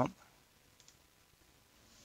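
The last syllable of a spoken word at the very start, then quiet room tone with a single faint click about a second in, from working a computer.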